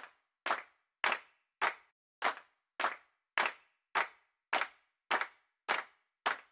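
A steady rhythmic beat of sharp, clap-like percussion hits, about two every second with silence between them: the opening beat of a promo's music track.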